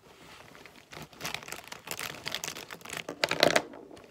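Hands handling a fabric pencil case packed with markers and pens: the flap is pulled back, the fabric rustles and the pens click and rattle against each other in a quick run of small clicks. The handling is loudest near the end.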